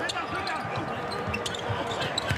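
A basketball being dribbled on a hardwood court, with sneakers squeaking as players move. The thuds and short squeaks come one after another throughout.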